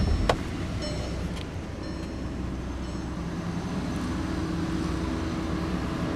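2015 Volkswagen CC's 2.0-litre turbocharged four-cylinder idling steadily, with one sharp click about a third of a second in as the hood release lever under the dash is pulled.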